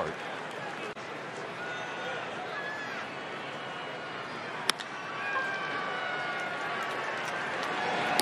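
Ballpark crowd murmur with scattered voices, broken about five seconds in by a single sharp crack of a wooden bat hitting a pitched ball. The crowd noise lifts slightly just after the hit.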